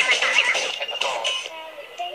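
Short radio music jingle with high-pitched singing. It thins out about a second and a half in.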